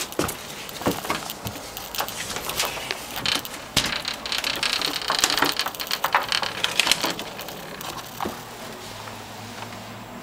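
Close-up handling noise: rapid crackling, scraping and knocking of things rubbing and bumping against the microphone and nearby surfaces, thickest in the middle and dying away near the end.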